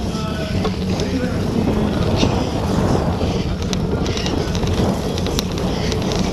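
Wind buffeting the microphone of a camera carried on a bicycle riding at about 20–25 km/h over a muddy grass track. Scattered light rattles and clicks come from the bike.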